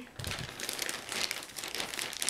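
White plastic poly mailer bag crinkling and rustling as it is handled by both hands, with a soft low thump just after the start.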